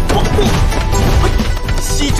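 Fight sound effects over dramatic score: repeated smashing, whacking impacts and crashes, with music running underneath.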